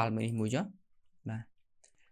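A man speaking Khmer: a few words at the start, then one short syllable a little over a second in.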